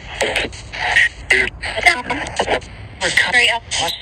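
Spirit box sweeping through radio stations: choppy fragments of radio voices and static, cut every fraction of a second by clicks. The investigators take the fragments for whispered answers from a spirit, "It was big" and "You left out".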